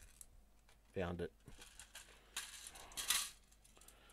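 Small plastic Lego Technic pieces clicking and rattling as a hand rummages through a plastic sorting tray, with a brief clatter a little after the middle. A short murmur from a man comes about a second in.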